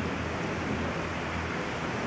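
Steady background hiss with a low hum underneath: room noise.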